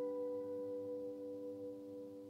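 A last chord on an acoustic guitar ringing out and slowly fading away, a few clear notes sustaining with nothing new played.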